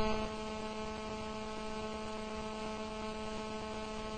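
Steady electrical hum from a microphone and sound system: a low tone with several fainter higher tones above it, unchanging in pitch and level.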